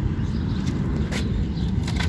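Steady low outdoor rumble with a few light clicks and rustles from hands pinching the roots off a potted flower seedling over the soil.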